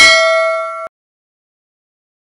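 Notification-bell ding sound effect from a subscribe-button animation: one bright metallic ring with several overtones that fades and then cuts off abruptly just under a second in.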